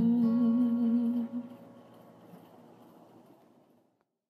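The end of a Malay pop ballad: a male voice holds the final note with vibrato over guitar, breaking off about a second and a half in. The accompaniment then dies away to silence near the end.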